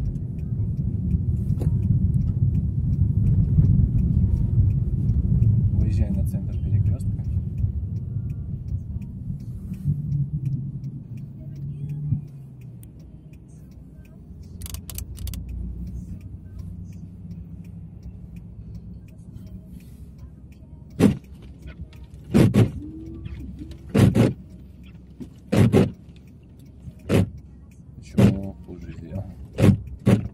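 Car interior during a drive: engine and road rumble for the first dozen seconds, fading about halfway as the car slows. Then, from about twenty seconds in, short sharp strokes come about every second and a half.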